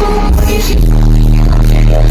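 Loud live concert music recorded from the crowd: a heavy, booming bass holding a low note through the second half, with a woman singing into a microphone over it.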